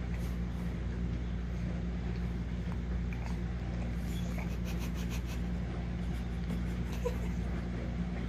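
Steady low hum of a household appliance or electrical device in a room, with a few faint clicks about halfway through.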